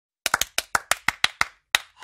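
A quick run of about a dozen sharp clap-like hits over a second and a half, a percussive sound effect opening an animated logo ident.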